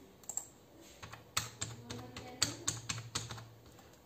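Typing on a computer keyboard: a few keystrokes, a pause of about a second, then a quick run of keystrokes as a password is typed in.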